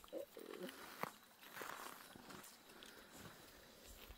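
Near silence outdoors: faint small sounds, with a brief faint voice-like sound near the start and a single sharp click about a second in.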